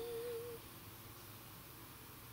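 The last note of a ukulele's closing chord ringing out and fading away within about half a second, leaving faint room hiss.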